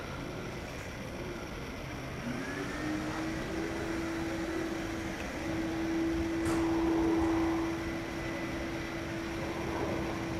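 Steady machine hum that starts about two seconds in, rises in pitch and then holds level, over a constant background noise; a short click about six and a half seconds in.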